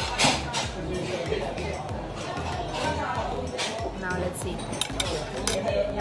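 Chopsticks clinking against porcelain plates and a sauce dish: a few short, sharp clinks scattered through, one loud one just after the start and a small cluster near the end.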